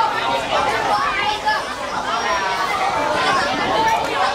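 Several voices talking and calling out at once: spectators and players at a youth football match.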